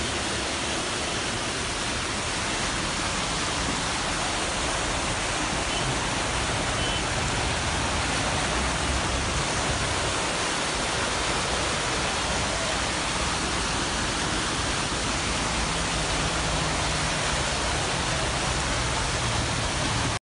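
Muddy floodwater from a heavy downpour rushing past in a torrent, carrying debris: a steady, unbroken noise of running water.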